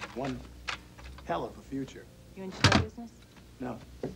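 Short bursts of a voice, and a door sound that is the loudest moment, about two and a half seconds in, as the hotel room door is opened.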